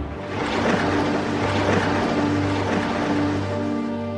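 Channel intro music: held low tones under a rushing swell of noise, like a whoosh effect.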